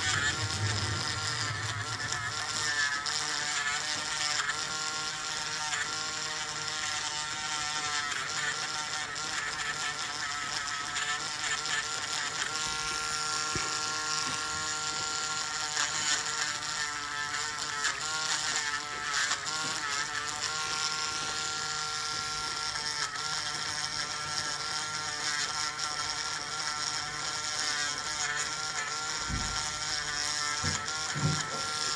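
Electric podiatry nail drill running steadily, its whine wavering in pitch as the burr is pressed against the toes to grind down thickened toenail and hard skin.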